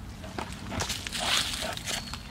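Plastic rubbing and rustling as a large black plastic digester cone is pressed down onto its plastic base ring, with a few faint knocks, then a louder scrape about a second and a half in. The cone sits on without clicking into place.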